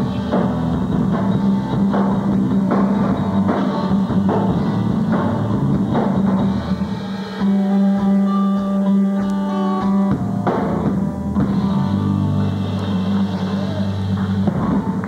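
Rock band playing live: drum kit and electric guitars. Steady drum beats give way about seven seconds in to a held guitar chord for a few seconds, then the drums come back in under sustained low notes.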